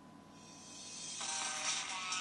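Video intro music playing through a Motorola Milestone 2 smartphone's small loudspeaker. It swells in from about half a second in, and a tune with held notes enters just past a second.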